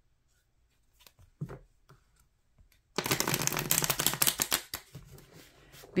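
A worn tarot deck being shuffled by hand. A few soft taps of the cards come first, then about three seconds in a quick run of rapid card flicks lasts under two seconds and trails off.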